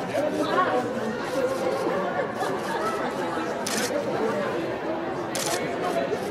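Photographers' camera shutters firing in short rapid bursts, most clearly about four seconds in and again near the end, over the steady chatter of a press line.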